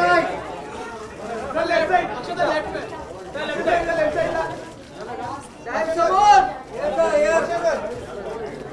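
Chatter of several voices talking and calling over one another, with a louder call about six seconds in.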